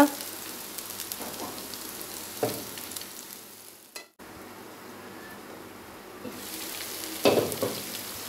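Oil sizzling in a frying pan, fading away about halfway with the heat switched off under the fried bitter gourd, then breaking off suddenly. The sizzle starts again steadily from chicken frying in masala, with a brief louder stirring sound near the end.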